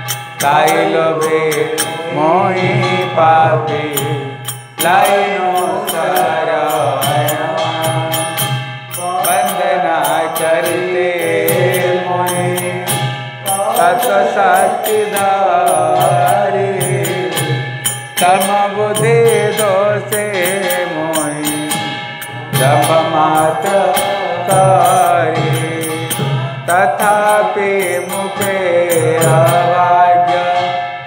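Devotional chant sung in long melodic phrases over musical accompaniment, with a steady beat of sharp, bright percussive strokes.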